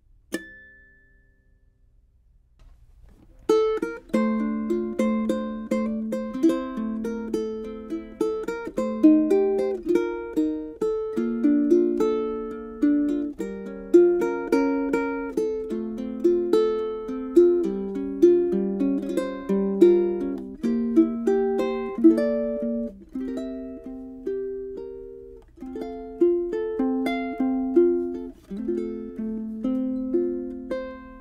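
Ukulele with a NuBone synthetic saddle played fingerstyle: a plucked melody with chords that begins about three and a half seconds in and continues to the end. A single short click comes just after the start.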